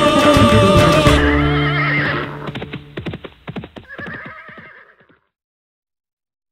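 The last bars of a rumba played by a Latin dance band: the full band sounds for about a second, then the sound thins. A run of sharp percussive clicks and a short wavering high tone trail off, and the track ends about five seconds in.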